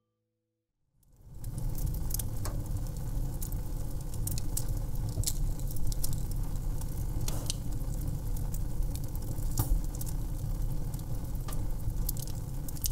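Wood fire burning, with a steady low rumble and frequent sharp crackles and pops; it fades in after about a second of silence.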